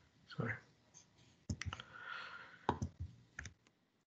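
Scattered sharp clicks, coming in close pairs in the second half, with brief faint murmurs, picked up by an open microphone on a video call. The sound drops to dead silence between them.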